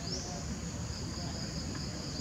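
Steady high-pitched buzzing of insects in tropical forest, with one call sweeping up into the drone just after the start, over a low background rumble.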